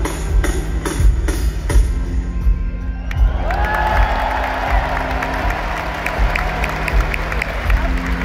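Live rock band playing over an arena PA with a steady beat and sustained bass notes. About three seconds in, the crowd starts cheering and whistling over the music and keeps going.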